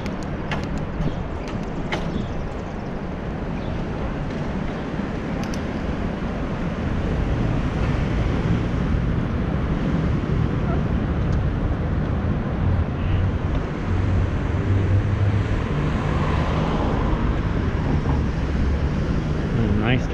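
Wind rushing over a cycling action camera's microphone, mixed with road noise and city traffic; the wind grows louder about seven seconds in.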